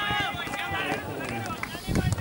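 Indistinct voices talking with no clear words, with a few faint clicks near the end.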